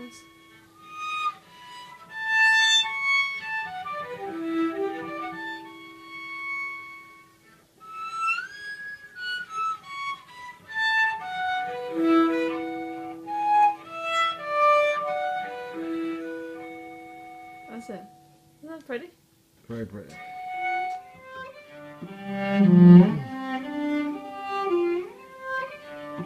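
Cello bowed in harmonics: high, whistle-like notes with slides in pitch over a held lower note. After a brief pause near the end it moves to fuller, louder notes played normally in the lower register.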